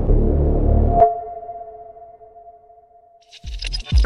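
Electronic intro music: a low pulsing bass beat stops about a second in with a sharp hit, leaving a ringing ping-like tone that fades away, then a rising whoosh with high glittering sounds near the end.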